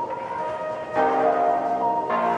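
Background music: held, sustained notes that move to a new chord about a second in.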